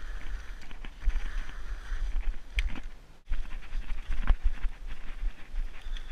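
A hiker's footsteps and trekking-pole strikes, first in snow, then on a leaf-littered forest trail, with wind and handling rumble on the microphone throughout. The sound drops out briefly a little past halfway.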